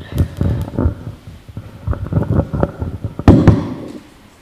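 Handling noise on a roving handheld microphone as it is passed to the next questioner: a run of irregular thumps and knocks, loudest in a pair a little after three seconds in.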